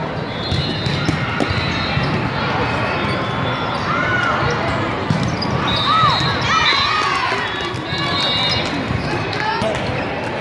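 Indoor volleyball play: sharp thuds of volleyballs being served, struck and bounced, with a few short squeaks in the middle, over a steady hubbub of voices echoing in a large hall.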